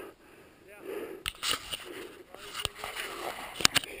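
Boots stepping down through deep, soft snow, each step a soft crunch, with a few sharp clicks scattered through the middle of the sound.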